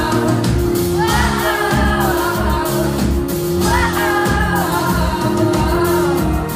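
Pop song playing: a steady band backing with a pulsing bass under a sung vocal line, the layered voices sliding up into a new phrase about a second in and again near four seconds.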